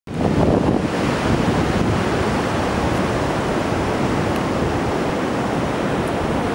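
Steady rushing noise of ocean surf on a beach, mixed with wind on the microphone.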